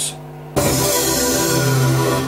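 Waldorf Blofeld synthesizer playing its "With Love" pad preset: a bright, airy pad sound comes in suddenly about half a second in and is held. Under it sits a steady electrical hum, which the player suspects comes from poorly shielded connecting leads.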